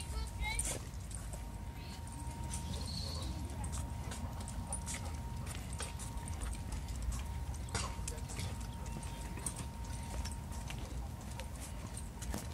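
A person and a leashed dog walking on a concrete sidewalk: a steady run of light clicks and taps from footsteps and the dog's claws on the pavement.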